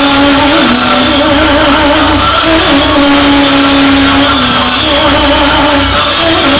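Loud live band music played through the PA: a melody moves in long held notes that step from pitch to pitch over a steady backing, with no clear singing.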